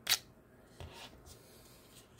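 Fixed-blade knife pulled out of its hard plastic sheath: one short, sharp scrape-click right at the start, then a few faint handling rustles of plastic.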